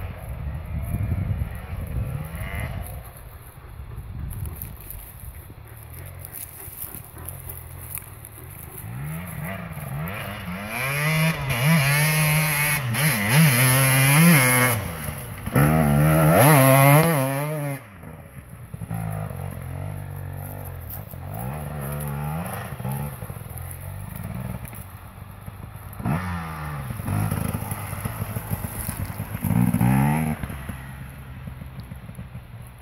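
Enduro dirt bike engine revving up and down as it is ridden over rough ground, its pitch rising and falling with the throttle. It is loudest from about ten to eighteen seconds in as the bike passes close, then drops away suddenly and carries on more quietly.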